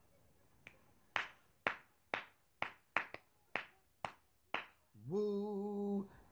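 About nine sharp finger snaps, roughly two a second, keeping a loose beat. Near the end a man's voice comes in with a long sung note held at one pitch.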